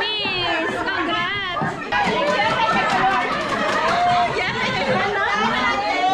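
Overlapping chatter of many people talking at once in a large room.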